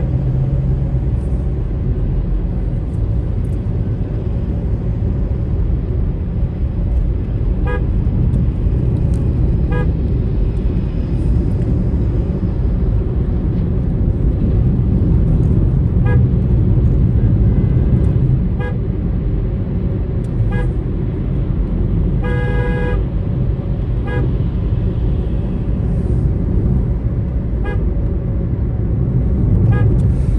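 Steady engine and road rumble inside a moving car's cabin, with brief vehicle horn toots every few seconds and one longer horn blast about three-quarters of the way through.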